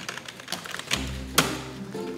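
Rapid typing clicks on computer keyboards, with one sharp louder key strike about a second and a half in, over background music.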